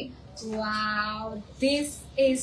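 A woman's voice holding one long, level sung note for about a second, followed by a short vocal sound near the end.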